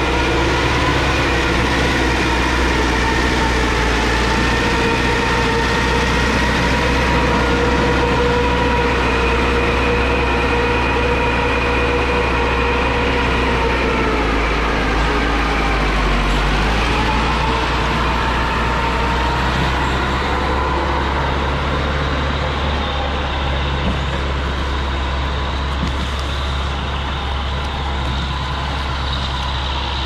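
Diesel engine of an LKT 81 Turbo forestry skidder running loud and steady under load as it drags oak logs. Its pitch sags about halfway through, then rises back up.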